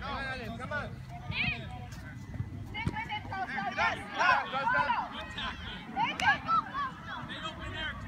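Voices shouting and calling out on an outdoor playing field, in high-pitched rising and falling calls, loudest around four and six seconds in, with one short knock about three seconds in.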